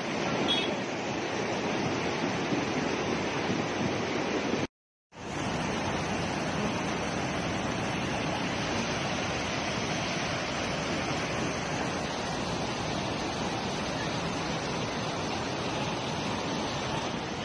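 Muddy floodwater rushing past as a steady, even noise. The sound drops out completely for about half a second around five seconds in, then the rushing resumes.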